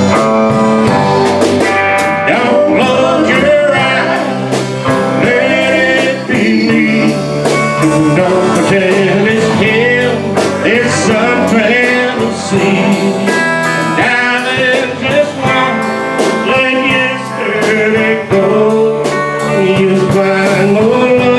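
Live country band playing a slow song with a steady beat: acoustic and electric guitars, bass, drums and keyboard.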